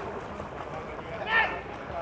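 Steady noise of swimmers splashing in the pool mixed with distant spectators' voices, with one short, high shout from the poolside a little over a second in.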